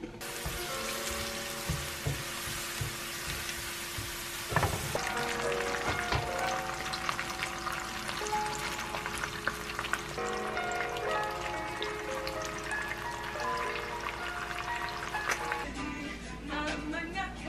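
Garlic and dried chillies frying in a pan of hot oil, then shrimp frying and being stirred with a spatula, with frequent small pops and clicks through the steady sizzle. Background music plays under it.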